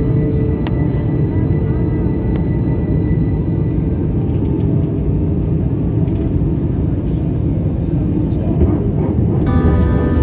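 Steady low rumble of an airliner's engines and airflow heard inside the passenger cabin during low-altitude descent on approach. A voice over the cabin PA begins near the end.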